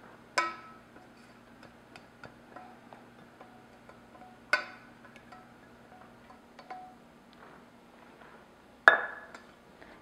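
Stainless steel saucepan and utensil clinking against a glass mixing bowl while melted butter is poured and scraped out: three sharp clinks with a brief ring, near the start, about four and a half seconds in, and a loudest one near the end, with small light taps between.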